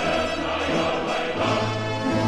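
Choral music: a choir singing long held notes over an accompaniment.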